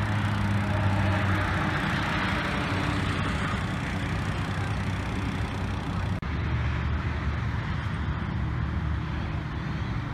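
Steady road-traffic noise from running vehicles, with a low engine hum underneath. The sound breaks off for an instant about six seconds in, then carries on.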